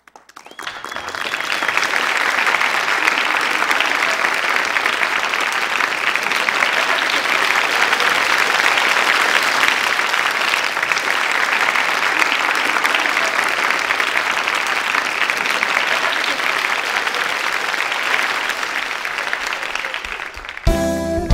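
Audience applauding: the applause swells up over the first two seconds and then holds steady and loud.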